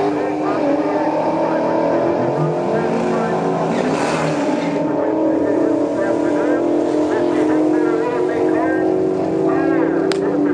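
Loud, steady rumble of drag cars' engines running at idle near the starting line, with people's voices over it in the second half.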